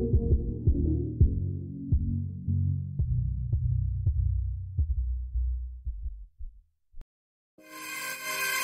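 Background electronic music fading out as its treble is progressively filtered away, leaving a muffled, throbbing low beat that dies out about six and a half seconds in. After about a second of silence, the next electronic track starts near the end.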